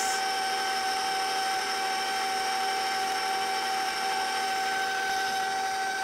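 Electric stand mixer running at a steady speed while it mixes cake batter, its motor giving a steady whine.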